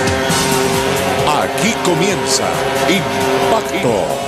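Loud intro theme music with a voice and car sound effects mixed in, starting on a sudden cut.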